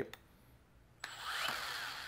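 Makita 18V LXT brushless cordless drywall sander switched on about a second in: a click of the trigger, then the motor winds up over about half a second to a steady whir.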